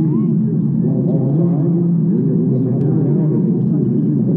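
Stadium crowd murmur: many voices chattering at once in a steady babble, with no single voice standing out.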